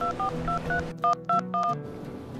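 Telephone keypad dialing tones: a quick run of short two-note beeps, about eight in two seconds, as a phone number is punched in. The second half of the run is louder.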